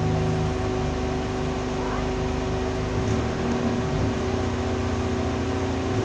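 Alexander Dennis Enviro200 single-deck bus heard from inside the saloon: the diesel engine runs under a steady high whine, and the engine note changes about halfway through.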